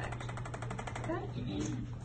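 Corded handheld electric percussion device buzzing in rapid, even pulses against the shoulder, then switching off about a second in.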